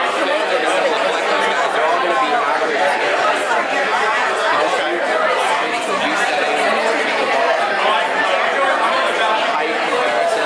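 Many people talking at once in a large room: a steady hubbub of overlapping conversation with no single voice standing out.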